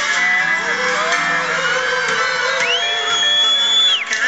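Live rock band playing, with electric guitars, heard from within the audience. About two and a half seconds in, a high note slides up and is held for over a second.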